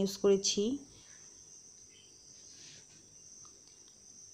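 A woman's voice for under a second at the start, then near silence with a faint, steady high-pitched whine.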